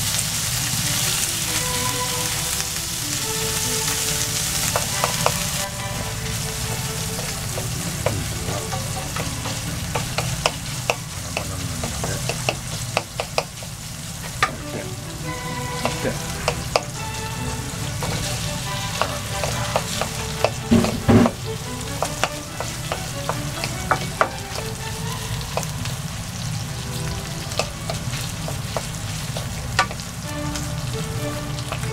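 Minced pork and garlic sizzling in oil in a non-stick frying pan, stirred with a wooden spatula that knocks and scrapes against the pan. The sizzle is louder for the first few seconds, and there is a burst of loud knocks a little past two-thirds of the way through.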